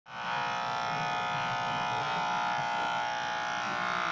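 Corded electric pet clipper running with a steady buzz as it shaves a small dog's coat.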